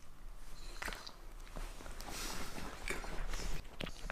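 Italian greyhound chewing and mouthing something, heard as faint, irregular soft clicks and smacks.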